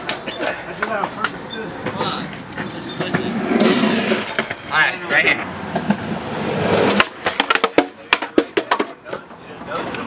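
Skateboard wheels rolling on concrete while friends shout and cheer a landed trick. About seven seconds in, the sound changes abruptly to a run of sharp, irregular clicks and knocks.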